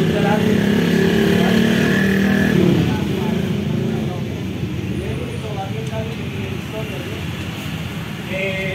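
A motor vehicle engine passing by, loudest for the first few seconds, then dropping in pitch and fading. Faint voices follow.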